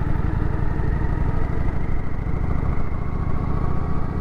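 Kawasaki Vulcan 900's V-twin engine running steadily as the motorcycle rides through a turn, with wind noise on the microphone.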